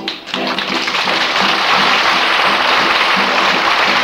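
A live audience applauding, the clapping rising about half a second in and then holding steady, over the last chords of the song's music.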